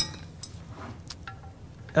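A sharp metallic clink with brief ringing, followed by a few faint light clicks, as metal parts of the Navigator rotary hose device are handled.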